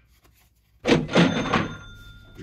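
Cash-register 'ka-ching' sound effect, about a second in: a loud clunk followed by a bell ringing out, marking a card's sold value being counted against the lot's cost.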